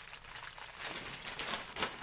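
Plastic candy wrappers crinkling and rustling as a hand sorts through a wicker basket of wrapped candies, with faint irregular crackles.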